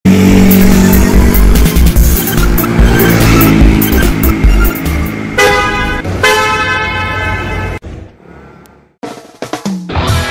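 Animated intro jingle: loud music with a heavy beat and cartoon car sound effects. A car horn honks twice a little past halfway, then the sound drops away before a short rising tone near the end.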